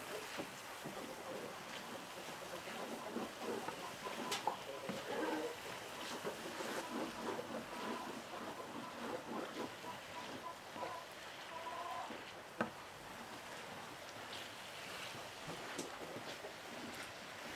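Chopped tomato and onion frying gently in an earthenware clay cazuela, a soft crackling sizzle, with a wooden spoon stirring and scraping against the clay. A few sharp clicks stand out, one of them near the three-quarter mark.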